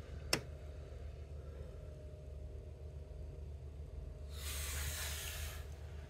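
Quiet steady low hum, with one sharp click shortly after the start and a brief hiss lasting over a second about four seconds in.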